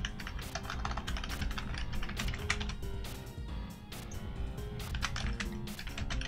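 Typing on a computer keyboard: a fast, uneven run of key clicks, several a second.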